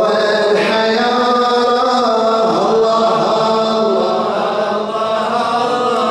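A man's voice chanting a celebratory religious poem in Arabic into a microphone, holding long melodic notes that slide from one pitch to the next.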